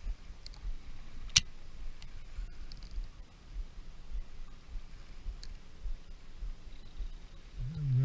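Uneven low rumble of handling and air movement on a small action-camera microphone while a fishing rod is jigged, with a few faint ticks and one sharp click about a second and a half in.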